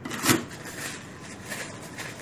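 Food-storage plastic bag rustling as it is picked up and unfolded by hand, with a louder rustle about a third of a second in.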